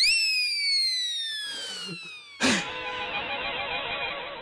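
Background-score sting: a sudden synthesized tone whose pitch glides steadily downward for over two seconds, then a second hit about two and a half seconds in that leads into background music with a wavering melody.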